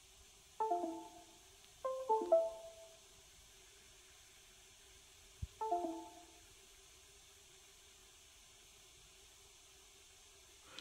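Four short two-note electronic chimes, each stepping down in pitch: one about a second in, two close together around two seconds in, and one near six seconds. These are the laptop's USB device chimes as the connected phone drops off and reconnects while it force-restarts. A single brief knock comes just before the last chime.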